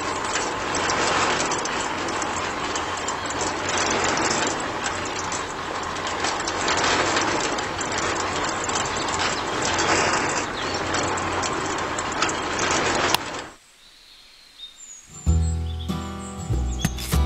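Small electric motor of a toy-sized DIY concrete mixer running and turning its drum of water: a steady, dense churning noise that cuts off suddenly about 13 seconds in. Music starts about 15 seconds in.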